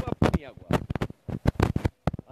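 Sports commentator's voice, choppy and broken by sharp crackling clicks, with a brief dropout about a second in.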